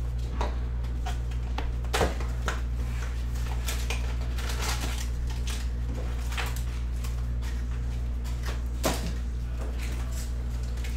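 Hockey trading cards being flicked and slid one by one through the hands, a run of light clicks and papery swishes, with sharper snaps about two seconds in and near the end. A steady low hum runs underneath.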